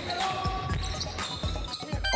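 A basketball dribbled quickly on a hardwood court, a run of repeated bounces. Music plays faintly underneath.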